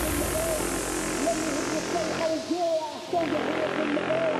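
House music from a two-deck DJ mix in a breakdown: the kick drops out just after the start, leaving a wavering vocal-like line over a hiss that sweeps downward.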